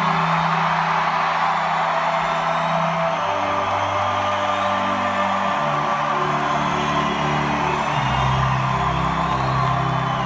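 Live orchestra playing long held low chords that shift every two to three seconds, with crowd whoops and cheering from the audience over it.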